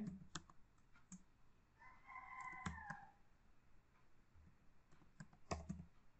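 Near silence with a few faint, scattered computer keyboard keystrokes as text is typed. About two seconds in, a faint drawn-out call with several pitches lasts about a second.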